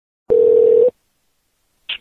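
A single steady telephone tone, about half a second long, heard through a phone line.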